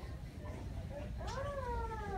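A person's voice giving one long high call that rises and then falls, starting a little over a second in.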